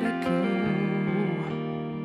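Live rock band playing an instrumental passage, electric guitar to the fore: sustained chords under a lead line that bends between notes.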